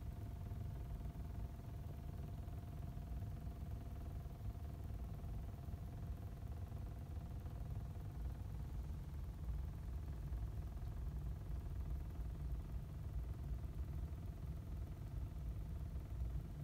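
Quiet room tone: a low, steady rumble with a faint steady hum over it for the first several seconds.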